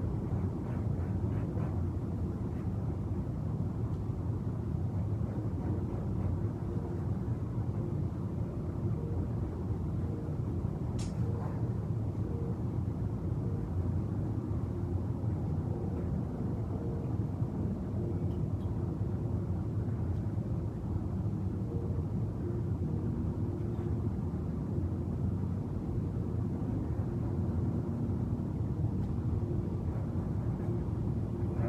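A steady low background rumble with a faint hum, with no clear events except a single light click about eleven seconds in.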